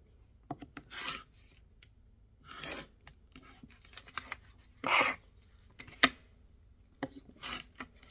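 Rotary cutter rolling along a ruler, slicing through foundation paper and fabric on a cutting mat in about four short raspy strokes, the loudest about five seconds in. A single sharp click comes about a second after that stroke.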